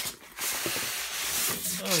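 Styrofoam packing block scraping and rubbing against the cardboard box as it is pulled out, a rough rubbing noise lasting about a second.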